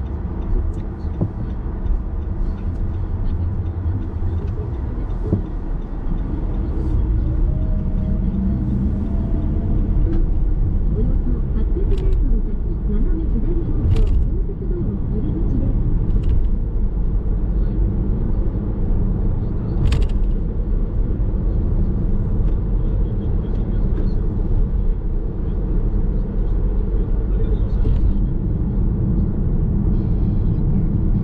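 Car cabin driving noise: low, steady tyre and engine rumble that grows louder a few seconds in as the car picks up speed after a curve, then holds steady. Three sharp clicks sound in the middle part.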